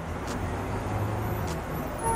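City street traffic ambience: a steady rumble and hiss of passing cars and buses.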